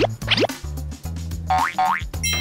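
Background music with a steady bass line, overlaid with cartoon comedy sound effects: two quick falling whistle-like glides near the start, then two short rising glides near the end.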